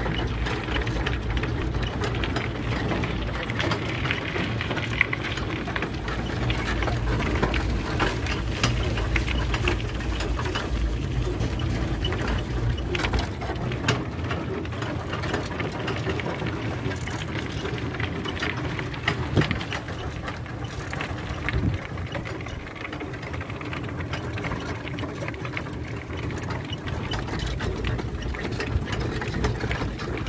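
Progear electric trike with a 36 V front hub motor riding along the trail towing a homemade camper: a steady mechanical whirr and low hum with many small clicks and rattles.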